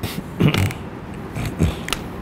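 Pages of a paper book being handled and turned: several short rustles and clicks spread through the two seconds.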